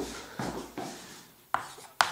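Chalk on a blackboard: a few soft knocks early on, then one sharp chalk strike about one and a half seconds in as writing begins.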